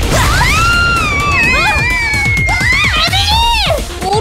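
Cartoon battle soundtrack: driving background music under a character's drawn-out straining cries that rise and fall, with a burst of overlapping cries near the end.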